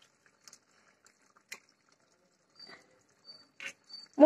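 Near silence, with a few faint clicks and small pops as raw eggs are broken open and dropped into a pot of simmering curry.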